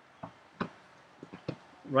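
Five small clicks and taps spread over two seconds, the second one the loudest, then a man starts talking near the end.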